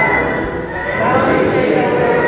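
Choir singing a hymn during the Mass, voices holding long notes.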